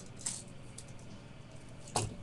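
Handling of a tape measure against a steel strike plate: a brief rustle a quarter second in, then one sharp click near the end as the tape is set against the plate.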